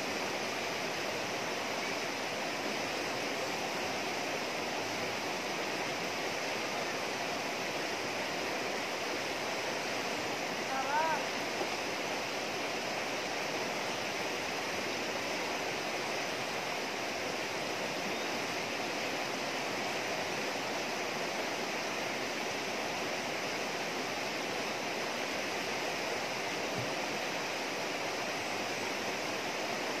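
Shallow river rushing steadily over rocks and rapids. A short rising-and-falling call cuts in briefly about a third of the way through.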